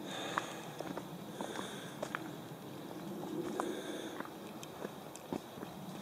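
Footsteps on a dirt forest trail: irregular soft crunches and ticks of boots on twigs and litter, over a steady low hiss.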